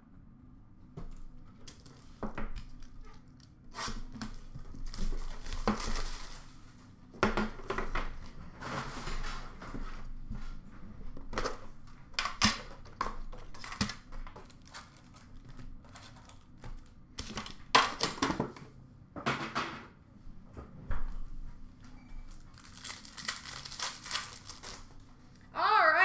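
Trading-card pack wrappers being torn open and crinkled by hand, in irregular bursts of tearing and crumpling.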